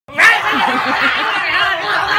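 Women laughing: a quick run of giggles in the first second, then more laughter.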